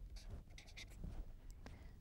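Felt-tip marker writing on paper: a run of faint, short strokes as letters are drawn.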